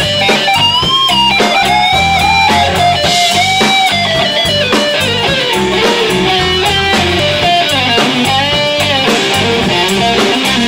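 A live rock band playing: an electric guitar leads with bent notes and vibrato over bass guitar and drum kit.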